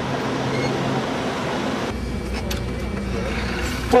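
Steady motor-vehicle noise: an engine hum with road rumble, turning deeper about two seconds in.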